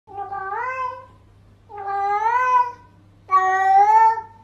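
A domestic cat meowing three times, each meow about a second long with a rising-and-falling pitch. The meows have a name-like shape that is read as the cat saying 'Nicole', 'Nicole', 'Taho'.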